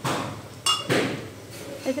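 Metal knocks on an iron kadhai, one of them a short ringing clink, over a sizzle of hot frying oil as a lump of rice-and-gram-flour batter goes in.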